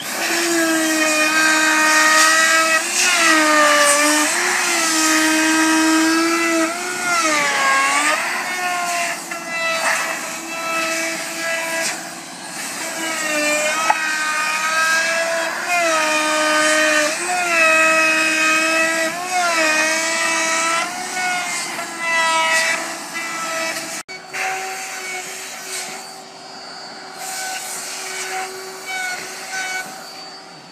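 Compact router running at high speed, a steady whine whose pitch dips and recovers again and again as the bit bites into the wood, cutting a decorative profile into a panel along a jig's guide rails. About 24 seconds in the sound breaks off abruptly and carries on fainter.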